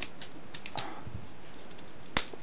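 A few light clicks and taps from a small plastic deli cup being picked up and handled, most of them in the first second, over a steady low hiss.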